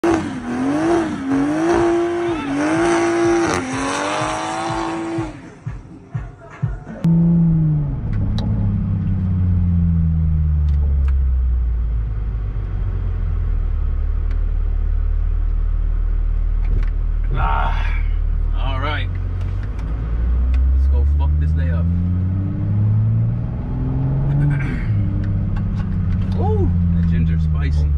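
Intro music for about five seconds. Then the engine of a Mk5 Toyota Supra is heard from inside the cabin while driving: the engine note drops as the car slows, holds steady while cruising, and rises again as it accelerates about twenty seconds in. Short bits of voice come through twice in the second half.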